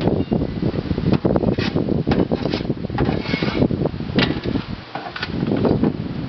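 A shovel scraping and scooping soil in a wheelbarrow, with repeated gritty scrapes about a second apart.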